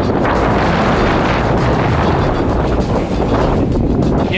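Wind buffeting the microphone of a body-worn camera, a loud steady rush, as a skier is pulled along by a kite.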